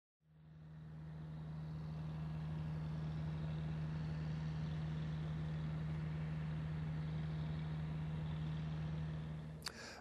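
Engine of heavy site equipment running steadily: a low, even hum that fades in over the first couple of seconds and stops shortly before the end.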